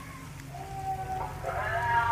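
A drawn-out animal call starting about half a second in and stepping up in pitch partway through, over a steady low hum.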